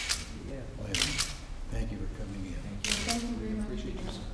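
Still-camera shutters clicking in short groups, at the start, twice in quick succession about a second in, and again near three seconds, with low murmured conversation underneath.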